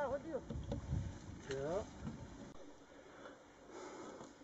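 Two short snatches of speech in the first two seconds over low rumbling noise, then quiet background.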